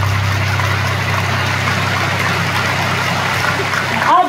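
Concert-hall audience applauding steadily, with a steady low hum underneath.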